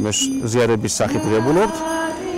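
A man speaking Georgian, in drawn-out syllables, his pitch rising slowly through one long sound about a second in.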